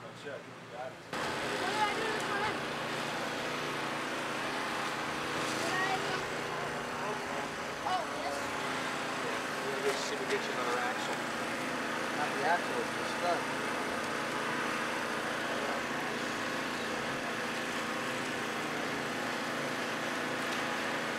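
A steady mechanical engine hum under low, scattered chatter of several voices, starting abruptly about a second in after a brief quieter stretch.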